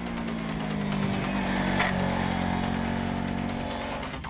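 Honda CBR500R's parallel-twin engine running on the track, its note sinking slowly in pitch.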